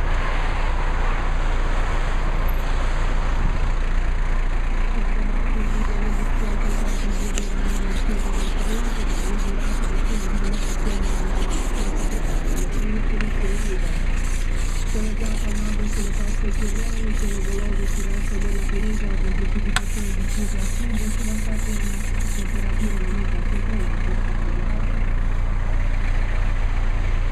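A steady low rumble, with a plastic ice scraper rasping across frosted car glass in quick repeated strokes, about three or four a second. The strokes come in runs from a few seconds in, with short breaks.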